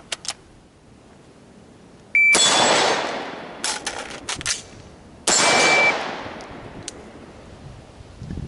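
A shot timer beeps, and an AR-style rifle fires one shot at once. A few seconds of clicks and clatter follow as an emergency reload is done, then a second shot about three seconds after the beep.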